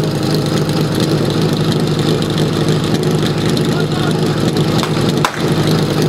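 Portable fire-sport pump's engine running steadily at idle. About five seconds in a single sharp crack rings out, the starting shot for the attack.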